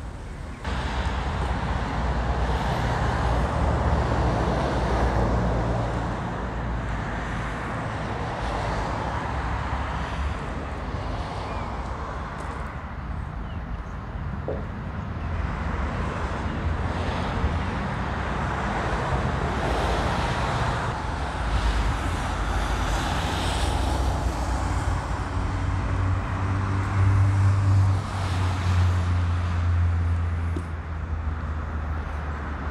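Road traffic noise, swelling and fading as vehicles pass, with a heavier engine hum near the end.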